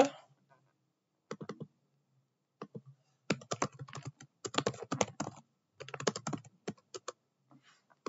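Typing on a computer keyboard: irregular runs of quick keystrokes with short pauses between them, starting about a second in and thickest in the middle.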